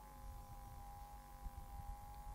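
Quiet room tone with a faint, steady hum: a pause between phrases of speech.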